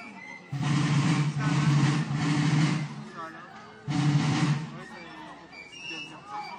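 Marching drums of a folk military procession beating loudly. They play one sustained burst of about two and a half seconds, stop abruptly, then play a shorter burst a little later.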